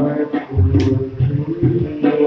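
Tabla playing: deep, booming bass strokes of the bayan drum repeated several times, with a sharp high stroke near the middle, under sustained melodic notes.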